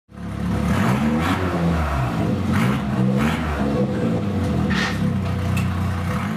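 Engine of a handbuilt prototype supercar running while parked, revved several times so that its pitch rises and falls.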